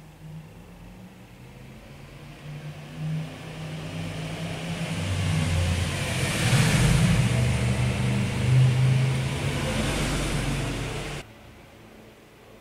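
Rumble of a motor vehicle's engine that swells over several seconds and then cuts off abruptly shortly before the end.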